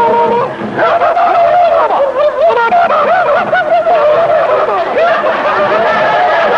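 Several men whooping and yelling together in a mock war dance, their voices warbling rapidly up and down without words.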